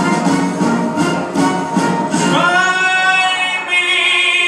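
A man singing a jazz ballad into a microphone over backing music. About halfway through he starts one long, strong held note.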